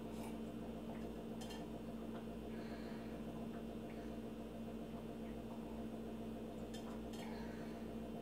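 A steady hum from a household appliance, with a few faint clinks and taps of a drinking cup being handled as it is drunk from and set down.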